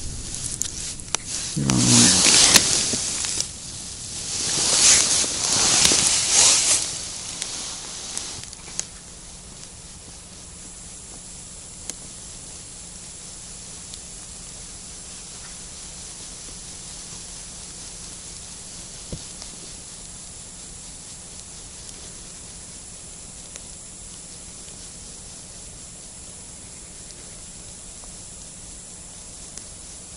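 Close rustling and scraping handling noise in bursts over the first several seconds, from an ice angler's clothing and hands moving as he deals with a small fish and takes up his rod. After that a steady low outdoor hiss, with a couple of faint ticks.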